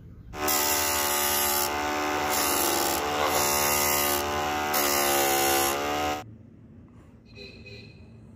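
Homemade disc sander, a small electric motor spinning a sanding disc, grinding the edge of a round disc pressed against it. A steady motor hum runs under a harsh sanding hiss that swells and eases about four times as the piece is pushed on and eased off. It starts about half a second in and cuts off suddenly about six seconds in.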